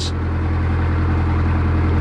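Narrowboat's diesel engine running steadily under way: a deep, even hum with a fine regular beat.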